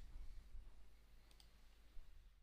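Faint computer mouse clicks: one right at the start, then two in quick succession about a second and a half in, over a low steady hum.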